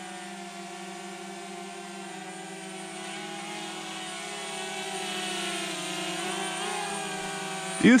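DJI Mavic Mini quadcopter's propellers buzzing steadily as it hovers, like a bunch of evil little bees. The pitch wavers slightly as it manoeuvres, and the buzz grows a little louder a few seconds in.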